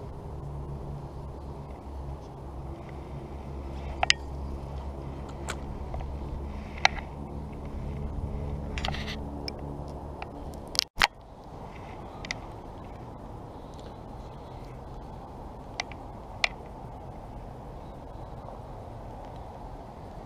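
Handling noise on a body-worn camera: scattered sharp clicks and knocks over a steady low hum. The hum breaks off abruptly about eleven seconds in. After the break there is an even hiss with a few more clicks.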